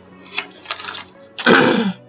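A woman clears her throat once, loudly, about one and a half seconds in, after a couple of soft rustles of journal pages being turned.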